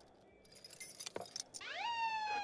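A bunch of keys jingling in hand, then near the end a police siren starts up with a rising wail.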